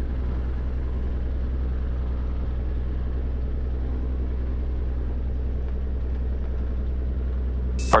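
Cirrus SR22's Continental IO-550 six-cylinder piston engine running at low taxi power, a steady low drone.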